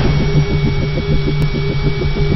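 Low electronic drone pulsing rapidly, about seven pulses a second, under a faint steady high tone: a produced soundtrack element rather than a live recording.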